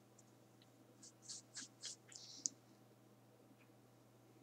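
Near silence broken about a second in by four short scratchy rustles in quick succession, ending in a single sharp click.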